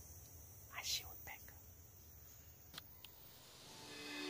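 Faint whispering, a few brief breathy sounds about a second in, then two small sharp ticks, over quiet background; music begins to fade in near the end.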